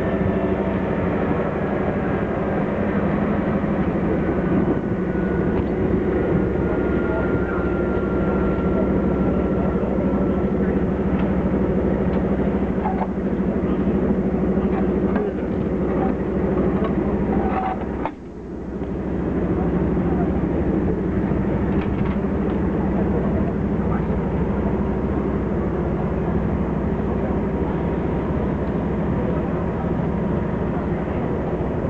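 Diesel locomotive engine idling steadily, with crowd chatter over it. A faint high whine slowly falls in pitch over the first ten seconds. The sound briefly drops away about eighteen seconds in.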